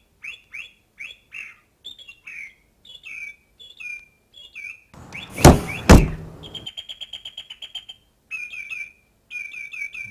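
Birds chirping in quick repeated short calls, broken about halfway by two loud bangs half a second apart, then a brief steady buzzing trill before the chirping resumes.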